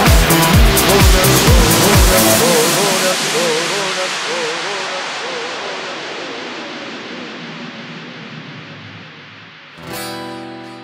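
Instrumental breakdown in an electronic dance remix: a steady four-on-the-floor kick drum runs for about two and a half seconds, then drops out, leaving a wavering synth line and a noise sweep that falls in pitch and fades away over the rest.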